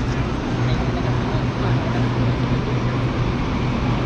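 Steady low hum of an electric commuter train standing at a station platform, over a constant noisy platform ambience.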